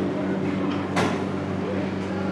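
A steady low hum with one sharp click about a second in.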